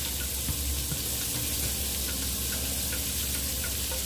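Battered catfish fillets deep-frying in hot peanut oil in a stainless steel pan: a steady sizzle with a few small pops scattered through it.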